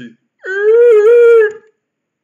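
A puppeteer's high-pitched voice holding one long wordless note for about a second, on a nearly steady pitch with a slight wobble, starting about half a second in and cutting off cleanly.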